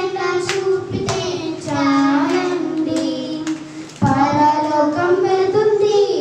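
Girls singing a Telugu song unaccompanied into handheld microphones, with long held and gliding notes.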